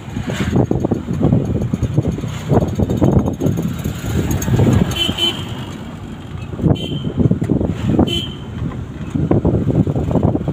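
Wind buffeting the microphone and road rumble from a moving vehicle, heard through an open window, loud and gusting unevenly. A few brief high chirps come through about halfway and again near the end.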